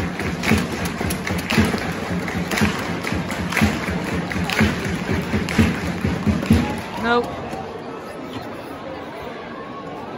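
Football crowd in the stadium chanting to a sharp beat about once a second. Around seven seconds in the chant dies away to a lower crowd murmur.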